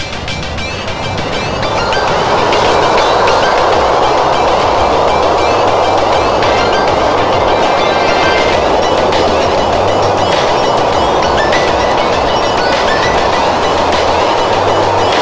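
Freight train passing close by behind an electric locomotive, its loaded car-carrier wagons rolling over the rails with a steady rumble and rattle. The sound builds over the first two seconds as the train draws near, then holds.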